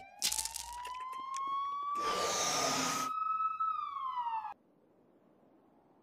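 A wailing siren rising slowly in pitch for about three and a half seconds, then starting to fall before it cuts off abruptly, with a rushing hiss lasting about a second in the middle. Near silence follows the cut-off.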